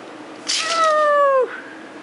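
Shih Tzu giving one high, drawn-out whine of just under a second that drops in pitch at the end, a dog begging for a treat held out of reach.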